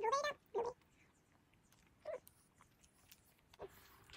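A few short high-pitched vocal sounds in a quiet room: a longer one that rises and falls right at the start, then single short ones about half a second, two seconds and three and a half seconds in.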